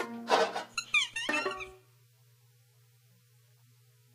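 Free-improvised ensemble music in short, broken fragments, with a gliding high note just after a second in. It breaks off abruptly a little under two seconds in, leaving only a faint steady low hum.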